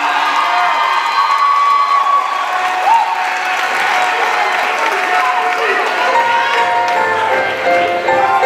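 Audience and choir applauding and cheering, with scattered whoops and shouts, over sustained keyboard chords.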